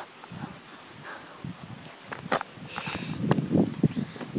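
Footsteps on a paved road and the knocks and rubbing of a handheld phone being carried while walking, with a rougher handling rumble in the last second.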